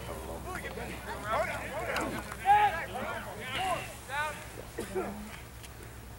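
Shouts and calls from people on a rugby field, scattered and indistinct, carried across open ground over a low steady hum.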